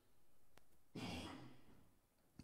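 Mostly near silence, with a faint click and then a short sigh-like breath from a man into a handheld microphone about a second in.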